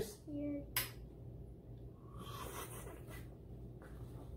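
Mostly quiet room: a short hummed vocal note near the start, then a single light click as small glasses of soda are handled, followed by faint low room noise.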